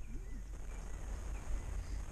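Faint outdoor background noise with a steady low rumble, and a brief faint pitched sound near the start.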